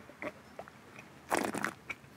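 Mouth sounds of a man sipping rosé wine from a glass: a few faint clicks, then a short noisy sip about a second and a half in.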